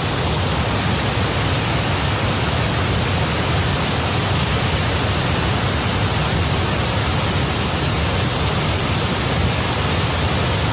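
Large tiered waterfall: loud, steady rushing of falling water with a strong low rumble, unchanging throughout.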